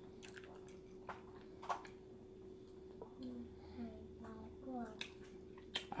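A person chewing a mouthful of food, with a few sharp clicks spread through and several short low hums a few seconds in. A steady faint hum runs underneath.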